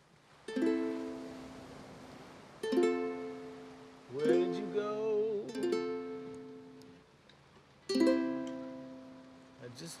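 A ukulele strummed in slow single chords, four in all, each left to ring and fade before the next, about every two to three seconds.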